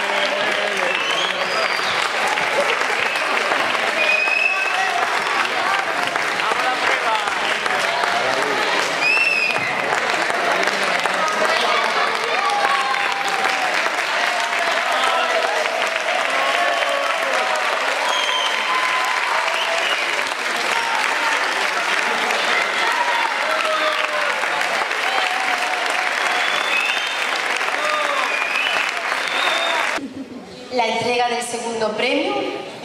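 Audience applauding steadily in a theatre, with voices calling and cheering mixed into the clapping.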